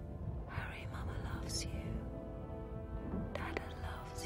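Film score with low, held notes, with breathy whispering over it about half a second in and again near the end.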